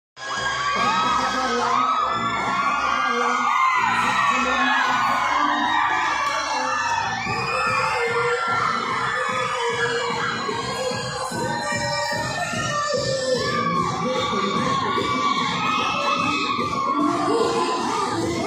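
Loud dance music over a hall's sound system with the audience shouting and cheering over it; a steady beat comes in about seven seconds in.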